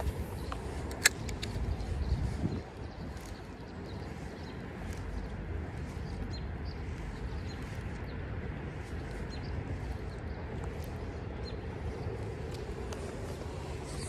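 Steady low rush of a flowing creek, with cloth rustling against the microphone and a sharp click in the first couple of seconds.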